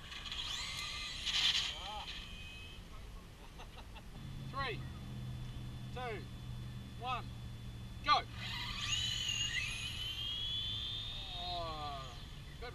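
Electric RC drag cars' motors whining as they run: a high whine near the start, then another that climbs steadily in pitch as a car accelerates in the second half. Several short, sharp calls and a steady low hum sound alongside.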